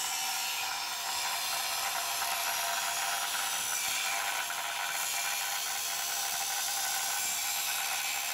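Angle grinder with a cutting disc running steadily as it cuts into the base of a metal railing post.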